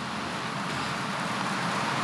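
Steady hissing background noise with no distinct events, slowly growing a little louder.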